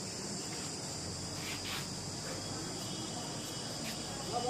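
Steady high-pitched insect chorus, like crickets, running without a break under faint background noise.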